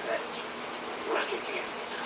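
Faint, indistinct voice under a steady hiss.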